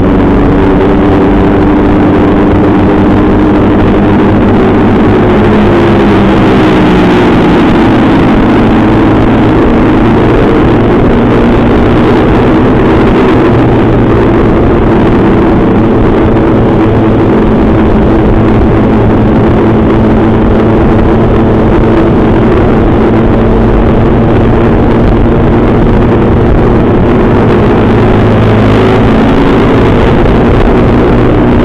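Mini GP pocket bike's small engine running under way at steady throttle, loud and close, its pitch dipping and rising about six to eight seconds in.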